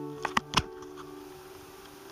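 Three sharp clicks within the first second, over a faint steady hum.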